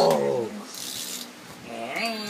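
A person making a car noise with the voice: a loud, growl-like sound falling in pitch at the start, then a short hiss about a second in.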